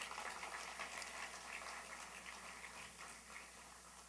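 Faint scattered audience applause, dying away over a few seconds.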